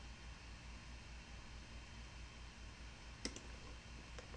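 A single sharp computer mouse click about three seconds in, over a faint, steady low hum.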